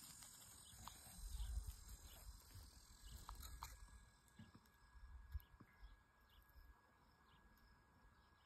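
Near silence, with a few faint low thumps and soft clicks from fingers digging in loose garden soil.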